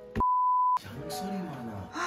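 A single steady, high-pitched beep about half a second long, with all other sound cut out beneath it: an edited-in censor bleep.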